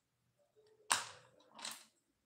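A paintbrush set down on a watercolour palette tray: a sharp clack about a second in, then a second, softer clatter near the end.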